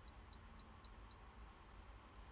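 Car stereo beeping: a high, even beep repeated about twice a second, three times, stopping a little after one second in. It is the stereo's warning, which comes on every time the truck's battery goes dead.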